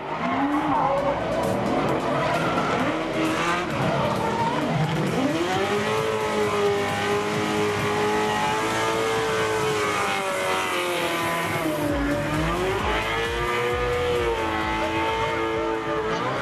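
Ford Mustang drift car's V8 held at high revs through a drift, with the tyres skidding and squealing. The engine note climbs, holds, dips briefly twice and climbs again as the throttle is worked.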